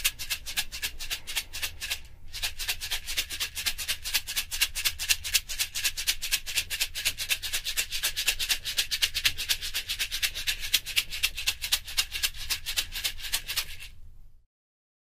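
A hand-held shaker is shaken in a rapid, even rhythm, with a brief break about two seconds in. It is carried around the head of a listener who wears a binaural 3D microphone, so the sound moves from front to back, side to side and up and down.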